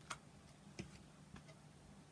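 Near silence with a few faint, irregular clicks of tarot cards being set down and handled on a cloth-covered table, over a faint steady low hum.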